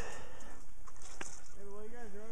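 A person's voice held on a low note, like a drawn-out hum, starting about one and a half seconds in with small steps in pitch; a single click comes just before it.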